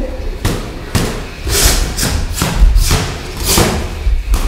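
Boxing sparring: gloved punches landing and feet thumping on the ring floor, a quick irregular series of about eight sharp hits over a heavy low thudding.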